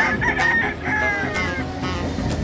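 Gamecock crowing once, a crow of about a second and a half, over background music.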